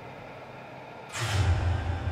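Soundtrack music, joined about a second in by a sudden low rumble with a whoosh that carries on.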